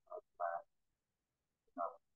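Three brief, isolated voice sounds, like halting syllables or murmurs from a speaker, with dead silence between them, heard over a video-call connection.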